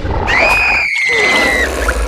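The cartoon red larva screaming: one high-pitched held scream about a second and a half long that dips a little as it ends, over a low rumble.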